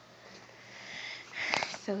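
A person sniffing, a quick breath in through the nose about one and a half seconds in, after a quiet pause.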